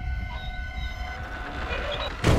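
Horror soundtrack drone: several steady high tones held over a low rumble. The tones break off about halfway, and a rising swell builds near the end.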